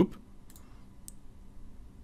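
A few faint, widely spaced clicks from a computer's mouse or keys, over low room noise.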